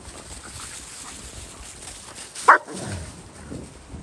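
A dog gives one short, sharp bark about two and a half seconds in while dogs play-fight, with dry leaves rustling under their paws.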